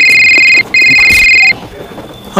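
Loud electronic beep tone in two bursts with a short break between them, the second slightly longer than the first.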